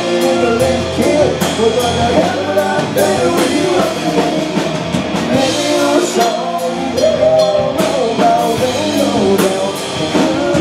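Live rock band playing: a lead singer's vocals over electric guitars, bass guitar and a drum kit.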